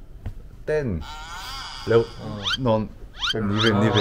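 Young men talking, with a drawn-out wavering voice about a second in and quick rising vocal sounds near the end.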